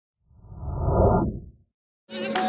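Deep whoosh sound effect of a logo intro, swelling up over about a second and dying away.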